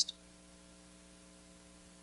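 Near silence with a faint, steady electrical hum from the sound system, after the tail of a spoken word at the very start.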